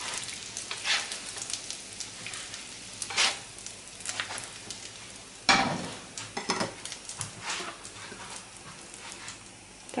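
Hot fat sizzling in a frying pan as fried egg-and-cheese cutlets are lifted out, with several sharp knocks and scrapes of the utensils against the pan and plate. The loudest knock comes about five and a half seconds in.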